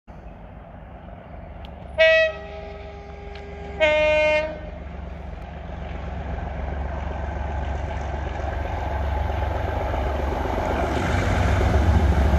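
Class 37 diesel locomotive 37425 sounding its two-tone horn twice, first a blast of about a second and a half and then a shorter one. It then approaches working hard, its English Electric V12 diesel growing steadily louder.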